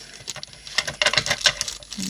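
A clear plastic bag around a small glitter jar crinkling and rustling as it is handled, in quick irregular crackles that grow busier about a second in.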